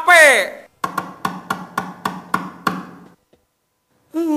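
A voice slides down in pitch and fades, then comes a run of about eight evenly spaced knocks, like a wood block, roughly three and a half a second over a low hum. The knocks stop about three seconds in.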